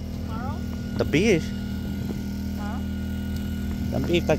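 A steady low mechanical hum of an engine or motor running at a constant pitch, with a few short spoken sounds over it, the loudest about a second in.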